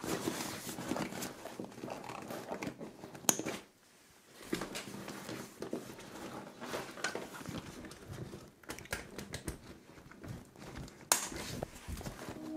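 Waterproof fabric of a pannier bag's roll-top closure being rolled down and handled, crinkling and rustling, with scattered small clicks and a couple of sharper knocks.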